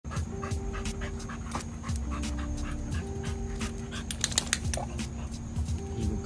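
Bully-breed dog panting hard and steadily with its mouth open, about three breaths a second.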